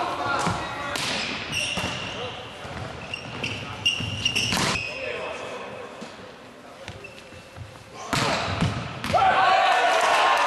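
Volleyball rally in a gym hall: the ball is struck sharply several times, the clearest hits about four seconds in. Near the end the players break into loud shouting.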